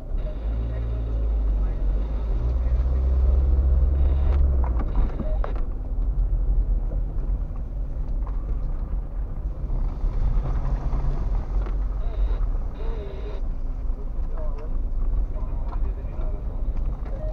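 Car engine and tyre noise heard from inside the cabin as the car pulls away and drives slowly over a rough, potholed road. The engine rumble comes in suddenly at the start and is loudest for the first five seconds, with a few knocks from the uneven surface.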